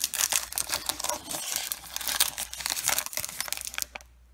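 Foil wrapper of a baseball card pack crinkling and tearing as it is pulled open: a dense run of crackles and small snaps that stops abruptly near the end.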